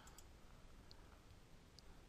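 Near silence: faint room tone with two faint computer mouse clicks, one about a second in and one near the end.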